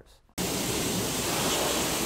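Steady hiss of a hot water and steam spray rinsing beef carcasses in a stainless steel wash cabinet, starting suddenly about a third of a second in.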